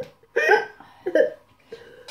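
A young girl's voice making two short vocal sounds into the glass mug held at her mouth, the first about half a second in and the second about a second later.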